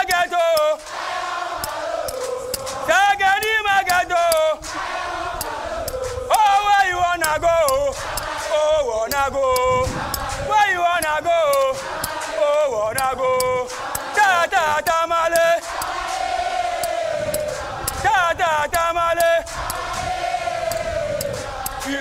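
A massed group of fire service recruits chanting their yell in unison: loud shouted-and-sung phrases in short bursts every second or two, with calmer sung stretches between them. Sharp claps fall among the phrases.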